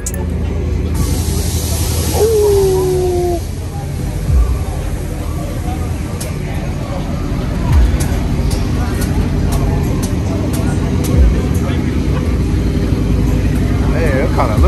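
Steady low rumble of idling vehicle engines with indistinct voices in the background. A short hiss comes about a second in, and a few dull thumps are spread through the rest.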